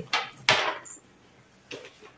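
A fabric backpack being handled: two short rustling scrapes in the first second, the second the louder, then a faint small knock near the end.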